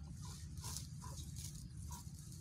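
Leafy fodder plants rustling and tearing as they are pulled up by hand, about four times, over a steady low rumble.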